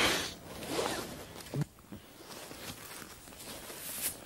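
A man drinking from a small barrel held to his mouth in gloved hands: soft swallowing and rustling of his ski gloves and jacket, with a short click about one and a half seconds in.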